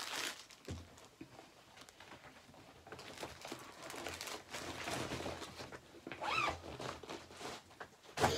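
Plastic packaging and project bags rustling and crinkling as they are handled, with a soft knock about a second in; the rustling is louder in the second half.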